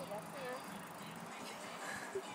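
A faint, brief voice near the start, over low steady background noise.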